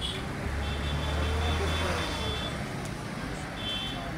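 Street traffic: a motor vehicle's engine rumbling low, strongest in the first half, with a high steady electronic tone sounding twice, once for about two seconds and again near the end.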